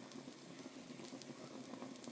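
A slice of French toast frying in butter in a nonstick pan: a faint, steady sizzle with fine crackling.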